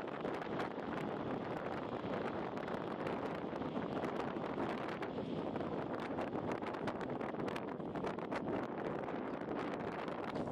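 Wind rushing over the microphone of a camera riding along on a moving bicycle, a steady noise with many small clicks and rattles from the bike running over rough tarmac.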